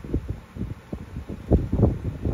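Wind buffeting a microphone: irregular low rumbling gusts, strongest near the end.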